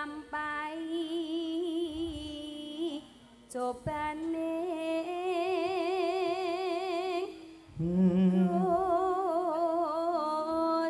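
A female Javanese singer (sindhen) singing into a microphone in long held notes with wide vibrato, pausing for breath about three and a half and seven and a half seconds in.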